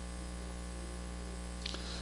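Steady low electrical mains hum with faint hiss, picked up through the lecturer's handheld microphone and sound system.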